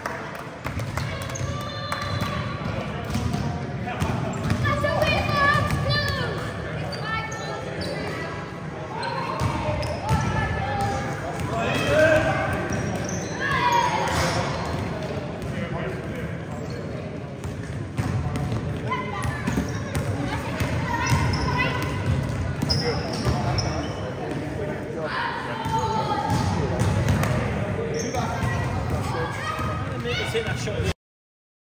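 Indistinct chatter of several people echoing in a large sports hall, with occasional thuds of a basketball bouncing on the court floor.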